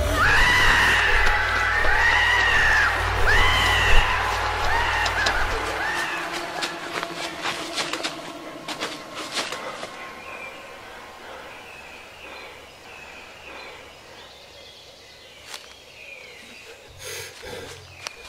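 A run of high-pitched, arching cries over a deep rumble; the rumble stops about six seconds in and the cries fade away, leaving faint scattered clicks.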